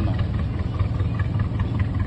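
A houseboat's engine running steadily under way: a low, even rumble.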